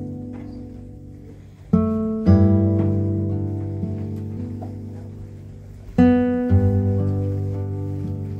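Background music: a solo acoustic guitar. Chords are struck in pairs about two seconds in and again about six seconds in, and each is left to ring out and fade.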